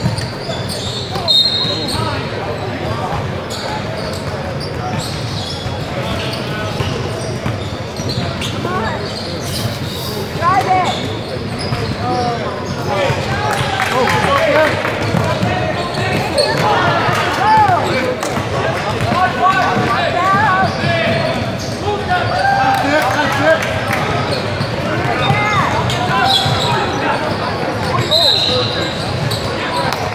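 A basketball bouncing on a hardwood court in a large gym, struck again and again, with indistinct shouts and chatter from players and spectators throughout.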